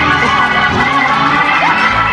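Church organ holding sustained chords, with the congregation calling out and cheering over it.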